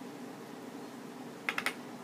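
Three quick, sharp plastic clicks about one and a half seconds in as a small cosmetics container of translucent powder is handled close to the microphone, over a faint steady hum.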